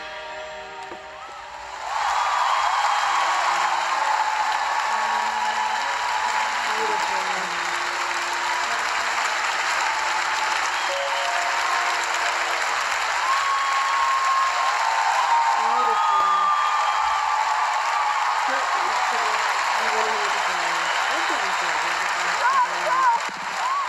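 A large concert audience applauding, with voices shouting over the clapping. The applause swells up about two seconds in, as the last notes of the live song fade, and carries on steadily.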